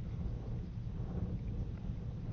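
Steady low rumble with a faint hiss: background noise on the launch-pad audio feed during the countdown, before the rocket's engines ignite.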